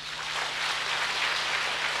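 Audience applauding: the clapping comes in at once and holds steady.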